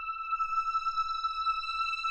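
Opening of an Italo disco track: a single high synthesizer note, held steady with a clean, ping-like tone, swelling up in the first moments over a faint low rumble.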